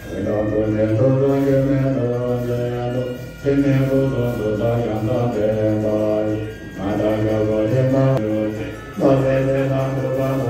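Buddhist lamas chanting prayers on a low, steady, nearly unchanging pitch, in phrases a few seconds long with brief pauses for breath between them.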